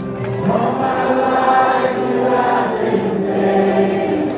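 A large congregation singing a worship song together, many voices holding long notes. The singing swells louder about half a second in.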